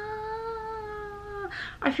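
A woman's long, drawn-out hesitation sound, one held, steady voiced note while she searches for a word. It stops about one and a half seconds in, followed by a quick breath before she speaks again.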